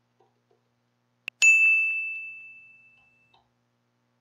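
A sharp click, then a single bright bell-like ding that fades away over about two seconds.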